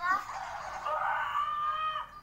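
A young child's wordless, high-pitched voice: a quick rising note, then a drawn-out held tone lasting about a second before it stops near the end.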